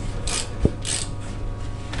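Brake caliper and rotor being handled by hand: a few short scraping rubs in the first second and a single sharp metal click just after half a second in.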